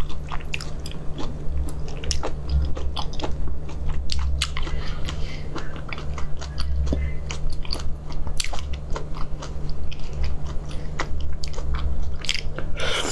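Shell of a marinated whole shrimp being peeled by hand close to the microphone: many small, irregular crackles and snaps of shell breaking away from the flesh. A steady low hum runs underneath.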